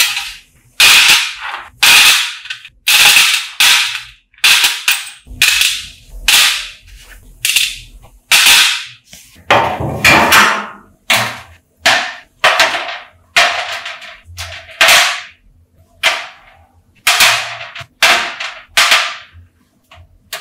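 Small rusty steel parts set down one after another onto a stainless steel tray, making a sharp metallic clank with a brief ring each time, about one or two a second throughout.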